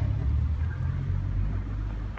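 Steady low rumble of an urban street, with no distinct event standing out.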